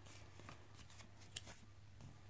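Faint papery rustle and a few soft ticks of a picture book's page being turned by hand, the sharpest tick about one and a half seconds in.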